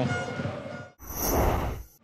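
The broadcast sound fades away. About a second in, a short rushing whoosh of a replay-transition effect swells and then cuts off suddenly.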